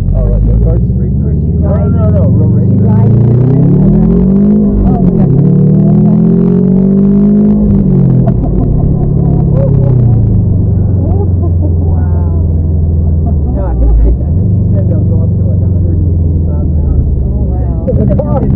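Subaru WRX's turbocharged flat-four engine heard from inside the cabin under hard acceleration: the revs climb, drop sharply about four and a half seconds in, climb again, then fall away to a steady drone, with another brief dip past the middle.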